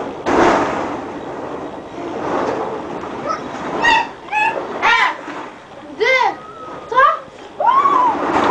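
Plastic ball-pit balls rustling and clattering as they are churned and thrown. In the second half come several short, high-pitched squeals from a voice.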